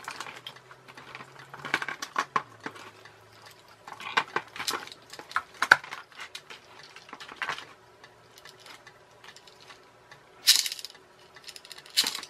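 Small plastic and metal parts clicking and rattling as they are picked up and handled over a plastic tub of odds and ends, with a louder rustling clatter about ten seconds in.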